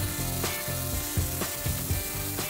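Water spraying steadily from a hose onto live crawfish in a plastic cooler, a continuous hiss, with background music playing over it.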